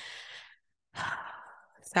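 A woman's breaths in a pause between spoken phrases: an audible sigh at the start, a short silence, then a second, longer breath about a second in.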